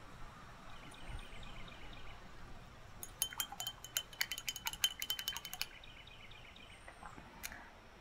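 A paintbrush clinking quickly against a glass water jar, a run of light taps with a faint glassy ring lasting about two and a half seconds, as the brush is rinsed. Faint bird chirps sound around it.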